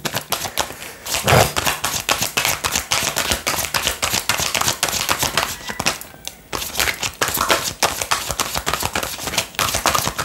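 A tarot deck shuffled by hand: a rapid, continuous run of card flicks and slaps, with a short pause about six seconds in.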